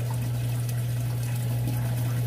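Aquarium pump and filtration running: a steady low hum under a constant rush of moving water.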